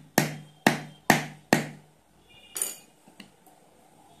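Hard plastic tool handle tapping a rubber toy wheel's hub onto its axle rod: four sharp, evenly spaced taps about two a second, stopping about halfway through. A brief rattle follows a little later.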